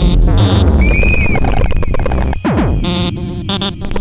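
Experimental electronic music played on synthesizers: over a heavy bass, a tone arches up and down about a second in, a steep falling sweep drops from high to low past the halfway mark, and chopped bursts of noise follow as the bass thins out near the end.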